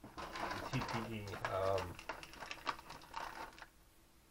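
A man's brief hesitant voice, then a little under two seconds of crinkling from a mylar-type filament bag being handled, stopping shortly before the end.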